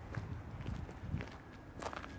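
Footsteps on a gravel street, a few irregular steps with sharp clicks, over a low steady rumble.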